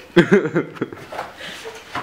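A person laughing in a few short bursts during the first second, then quieter.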